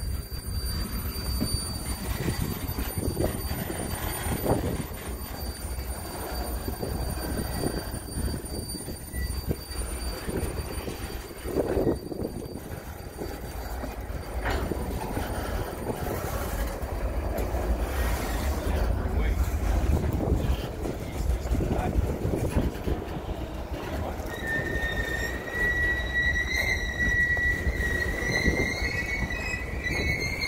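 Loaded-car freight train of covered hopper cars rolling slowly past at close range: a steady rumble of wheels on rail with scattered clanks. From about 25 seconds in, wheel flanges squeal against the rail in a high tone that rises slightly near the end.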